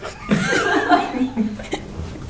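A man chuckling and laughing, mixed with a few words, for about a second and a half.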